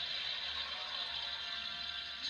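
Quiet background music from a television cartoon's soundtrack, heard through the TV's speaker with a steady hiss beneath it.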